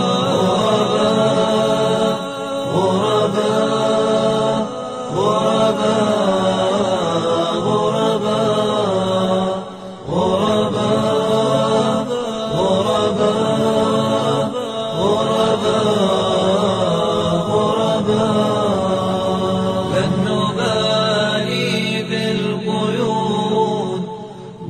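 Arabic nasheed sung a cappella by layered male voices in a slow, chant-like melody, with a brief drop in level about ten seconds in.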